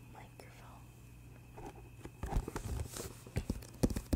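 A cardboard gift box handled close to the microphone: quiet at first, then from about halfway a series of soft knocks, taps and scrapes as the box is turned over in the hands.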